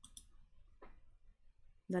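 A single faint click about a second in, amid quiet room tone; speech begins near the end.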